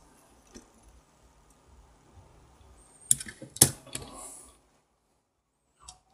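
Plastic parts of a Multimac toy crane clicking and knocking together as a yellow shovel attachment is handled and hooked onto the crane's hook. Two sharp clicks about three seconds in, the second the louder.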